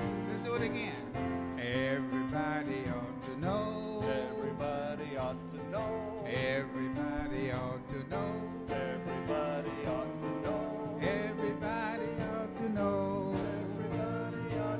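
A church praise band playing a simple country-style gospel chorus, with voices singing over plucked-string accompaniment and a steady strummed beat.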